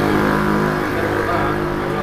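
A motor vehicle engine running steadily close by.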